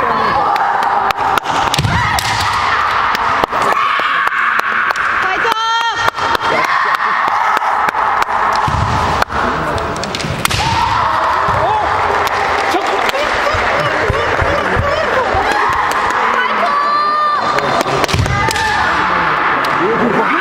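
Kendo bout: bamboo shinai clacking and striking, and bare feet stamping on the wooden floor in many sharp knocks, with two long, loud kiai shouts, one about six seconds in and one near the end, over a steady murmur of voices in the hall.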